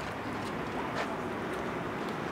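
Steady outdoor background noise with no clear single source, and one faint click about a second in.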